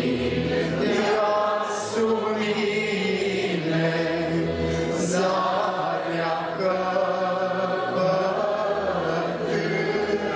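A congregation of men and women singing a slow Romanian Orthodox hymn together, with long held notes.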